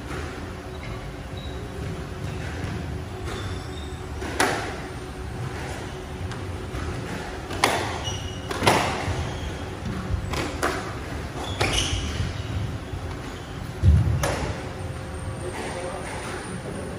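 Squash rally: the ball is struck and cracks off the walls every second or two, with a few short shoe squeaks on the wooden court floor. A heavy thud comes just before the last crack near the end.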